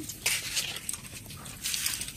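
Crisp crunching bites of raw green mango being chewed, in short bursts: one just after the start and another near the end.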